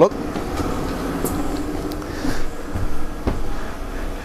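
A person stepping up into a caravan through its door: a steady rushing background with a faint hum, then a couple of dull thumps on the van floor about three seconds in.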